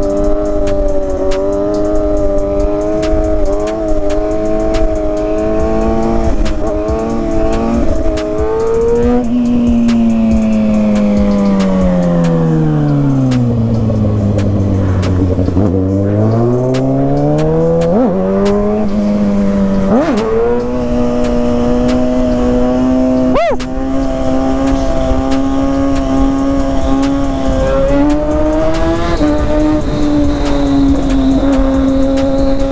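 Kawasaki ZX-6R inline-four engine heard from the rider's seat while riding. It holds steady revs, then falls to a low note as the bike slows almost to a stop, and rises again as it pulls away. Two quick throttle blips follow before it settles back to steady cruising revs.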